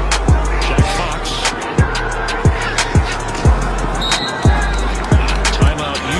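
Hip-hop backing track: deep bass kicks that drop in pitch, hit in an uneven pattern, under fast hi-hats.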